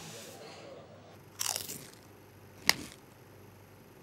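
A short crisp crunch, a bite into a tortilla chip, then a single sharp click about a second later.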